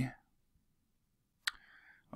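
Near silence after a word trails off, broken by a single sharp click about one and a half seconds in, followed by a faint rustle.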